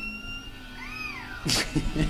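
Amazon parrot calling: a held whistled note, then a short rising-and-falling whistle, then a loud harsh call about one and a half seconds in.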